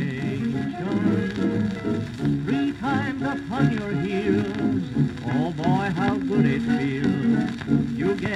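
1929 dance band music playing from a worn 78 rpm shellac record on a turntable, with wavering melodic lines over a steady accompaniment and the surface noise of a disc in poor condition.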